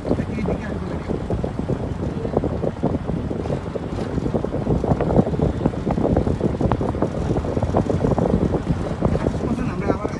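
Wind buffeting the microphone of a handheld camera, a steady low rumble with uneven gusts.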